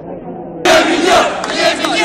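Muffled crowd chatter, then, about half a second in, a crowd of students breaks in loudly, chanting and shouting together.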